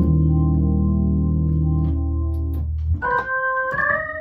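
Viscount Legend '70s Hammond-style organ played through a Leslie 3300 rotating speaker, holding sustained hymn chords over a deep bass. About three seconds in the bass drops out and higher chords come in, with faint key clicks at the chord changes.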